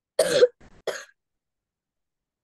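A single sharp cough from a person, with a short second burst just after it.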